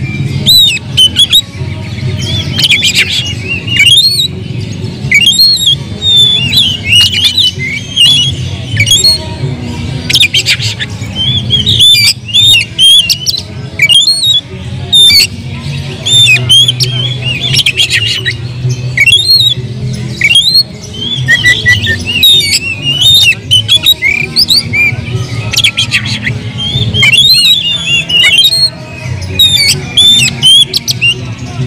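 Oriental magpie-robin (kacer) singing loudly and without pause, a fast run of varied whistles, chatters and harsh squawks: the agitated, full-voiced song of a bird worked up to fight. A steady low hum lies underneath.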